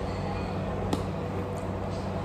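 Café room ambience: a steady low hum under a faint haze of background noise, with one sharp click a little under a second in.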